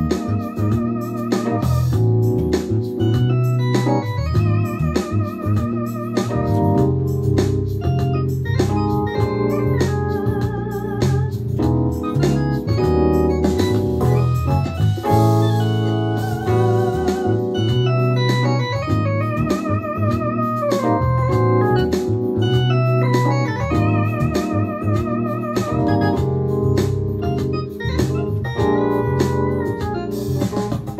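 A live band playing an instrumental passage: electric keyboards in organ and piano voices hold chords over a bass guitar line, with a lead line wavering in pitch and a steady beat.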